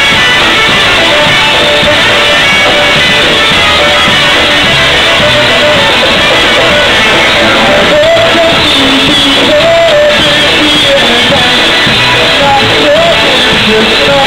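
A live polka band playing loudly, with accordion and horns over drum kit and bass.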